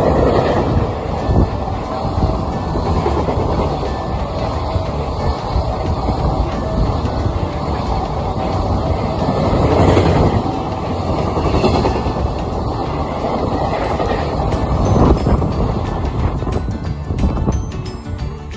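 Freight train of container wagons passing close by, a steady heavy rumble and clatter of wheels on rail that swells several times as the wagons go past.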